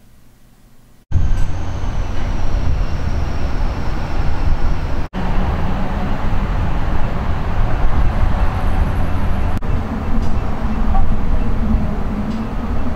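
Loud, steady outdoor rumble, heaviest in the low end, starting abruptly about a second in and broken by two brief dropouts.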